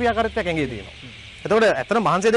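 A man's voice narrating, with a short pause in the middle, over a faint steady hiss.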